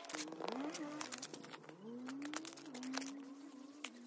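Gloved hand patting and smoothing packed snow, with scattered crisp crunches. Under it runs a faint, low, wavering call that glides up and down.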